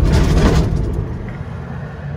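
Engine and road noise from a moving vehicle, heard from inside the cabin. It is a low rumble with hiss, loudest in the first half second and then fading gradually.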